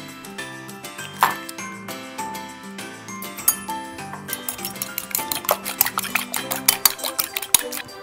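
Fork beating a raw egg in a small glass bowl: scattered clinks at first, then a quick run of fork-on-glass clinks in the second half, over background music.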